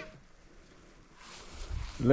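Faint outdoor background noise: a soft, even rustling hiss that grows louder about a second in, with a low rumble near the end.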